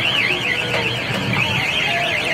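Electronic warbling siren sound effect from a kiddie airplane ride, its pitch sweeping up and down about four times a second, over crowd voices.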